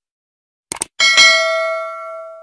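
Subscribe-button sound effect: a quick double click, then a bright notification bell ding that rings on with several overtones and fades away.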